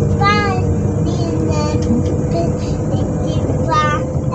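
SNCF double-deck electric multiple unit Z 20834 standing with its on-board equipment running: a steady hum and low rumble. Short rising-and-falling voice-like calls sound above it about three times.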